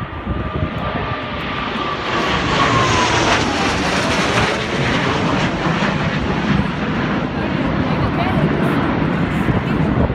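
Four Blue Angels F/A-18 Hornet jets in diamond formation flying by overhead. Their jet roar builds over the first two or three seconds and then stays loud, with a high whine that falls in pitch as they pass.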